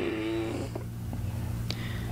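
A man's low, steady "mmm" hum as he pauses mid-thought, with a few faint ticks.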